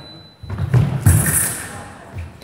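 Heavy thuds of sabre fencers' footwork stamping on the piste, loudest about a second in, echoing in a large sports hall.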